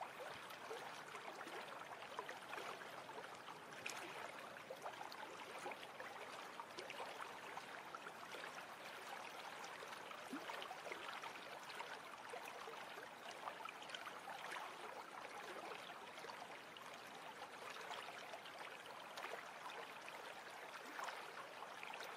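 Faint, steady bubbling and trickling of aquarium water from air pumps and filters, a dense patter of tiny pops.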